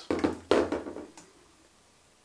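A light knock as a small racing quadcopter is set down on a desk, followed by a fainter tap about a second later.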